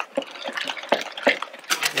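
Wire whisk beating melted margarine and egg in a plastic mixing bowl, its wires clicking and scraping against the bowl in quick, uneven strokes.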